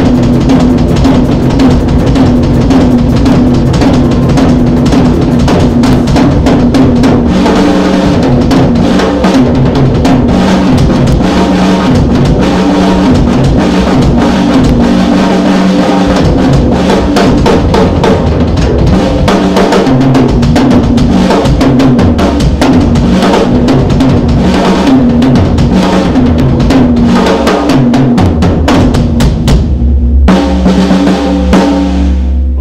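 Acoustic drum kit played solo: loud, dense, unbroken strokes on the snare, toms, bass drum and cymbals, with the bass-drum pattern changing about seven seconds in.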